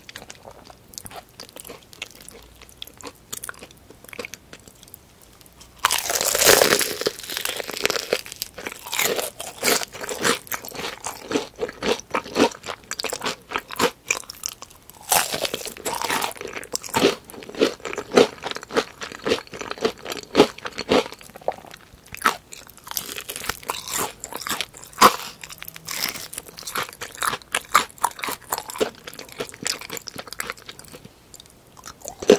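Crispy BBQ Golden Olive fried chicken being bitten and chewed close to the microphone, its batter crust crunching loudly. A big bite comes about six seconds in and another around fifteen seconds, each followed by rapid crunchy chewing.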